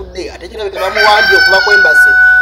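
A rooster crowing: one long, loud, steady-pitched call that starts about a second in.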